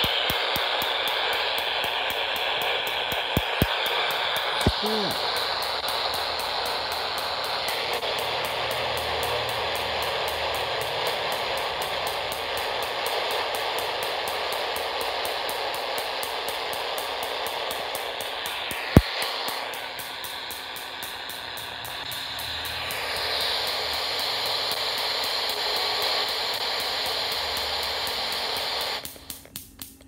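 Steady electronic static hiss played through a speaker, the output of a barium titanate detector unit wired into it. A few small clicks come early on and a sharp click about two-thirds of the way through, and the hiss cuts off suddenly just before the end.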